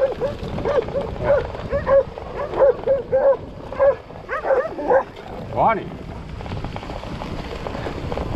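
A dog barking in a fast run of short barks, about two or three a second, that stops about six seconds in. Under the barks is the steady noise of bike tyres rolling over grass.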